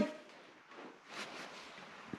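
Quiet room tone with a couple of faint, indistinct soft noises from handling near the engine.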